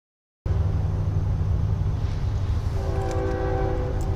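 A steady low rumble starts about half a second in. From just under three seconds in, a distant freight locomotive's air horn sounds one long multi-note chord as the train approaches, out of sight.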